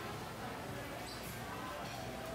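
Restaurant room ambience: indistinct chatter of diners, with a few light clinks and knocks of dishes and utensils.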